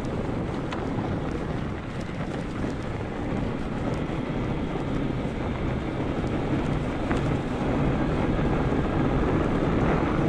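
Wind buffeting the microphone of a handlebar camera on a moving fat-tire e-bike, mixed with the rolling of its studded fat tyres over packed snow: a steady rushing noise that grows a little louder over the last couple of seconds.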